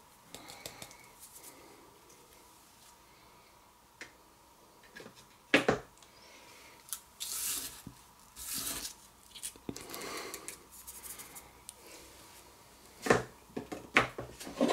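Hands working basing snow onto a small miniature base over a sheet of paper: faint, intermittent rustling and scratching, with a sharp tap a little over five seconds in and another near the end.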